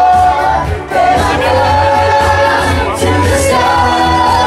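Live band music with several voices singing together in long held notes over a steady bass line.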